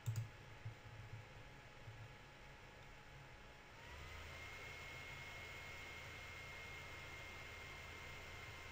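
Faint computer mouse clicks and small knocks in the first two seconds. About four seconds in, a faint steady hum sets in, with a thin whine that rises briefly in pitch and then holds steady.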